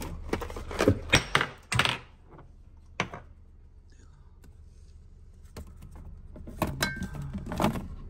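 Jars and containers on a pantry shelf being handled and set down: a run of clacks and knocks in the first two seconds, a single knock at about three seconds, and more clinks and knocks over the last couple of seconds.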